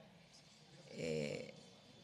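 A speaker's drawn-out hesitation sound, a voiced "é…" about a second in, set among otherwise quiet hall room tone.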